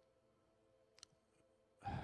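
Near silence in a pause of speech: a faint steady low tone, one short click about a second in, and a man drawing a breath near the end.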